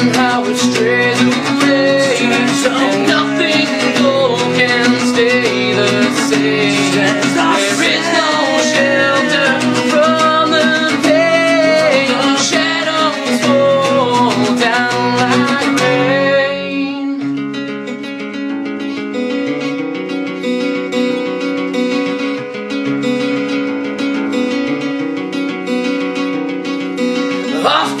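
Acoustic guitar strummed and picked as a song intro, with a wordless voice-like melody over it for about the first sixteen seconds; after that the guitar plays on alone, a little softer, until singing comes in at the very end.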